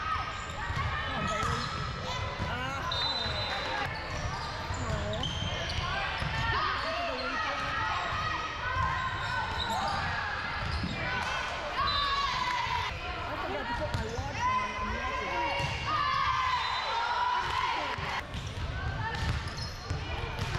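Volleyball rally in a large gym: overlapping voices of players and spectators calling out, echoing in the hall, with the sharp smacks of the ball being hit.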